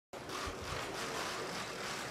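Faint room ambience: a steady low hiss with a few soft low thumps about half a second in, as people settle into chairs at a table.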